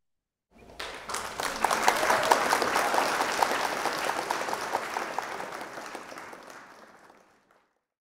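Applause: many hands clapping, starting about half a second in, swelling, then fading out before the end.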